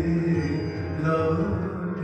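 Live devotional bhajan music: a drawn-out melodic line held and moving in steps of pitch, between sung lines of the verse.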